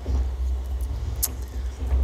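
A steady low rumble lasting about two and a half seconds, between stretches of speech.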